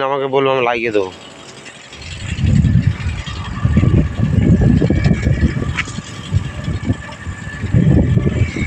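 Wind buffeting a phone microphone in uneven gusts, a low rumble over a faint steady hum.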